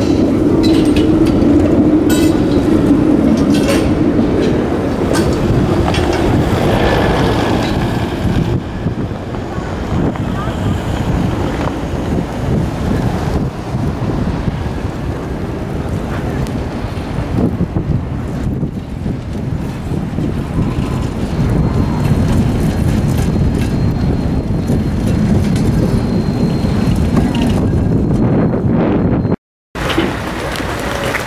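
A tram running away along the street, its motor hum strong for the first few seconds and then fading into a steady rumble of city traffic. The audio drops out briefly just before the end.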